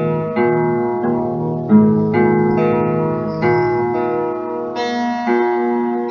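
Acoustic guitar playing a slow chord progression: each chord is struck sharply, then rings and fades before the next, about one to two a second.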